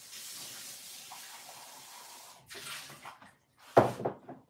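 Water running from a tap, shut off after about two seconds, followed by a few small clatters and a sharp knock near the end.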